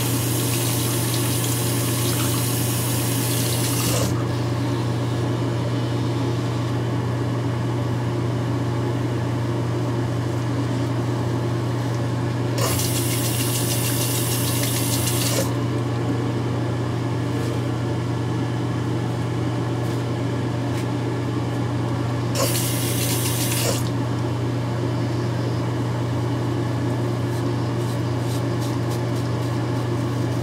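Gillette ProGlide Power razor's battery vibration motor humming steadily, with a tap running in three spells (about four seconds at the start, then two shorter runs) as the blade is rinsed. Quick short scrapes of the blade on stubble come near the end.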